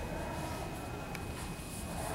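Quiet, steady room noise with one faint click about a second in; no clear scrubbing strokes.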